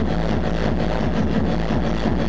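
Electronic dance music from a DJ set played loud over a club sound system, with a heavy kick drum and bass coming in at the start.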